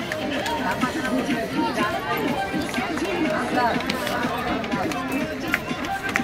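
Voices of a crowd of people talking at once, with no single voice standing out for long.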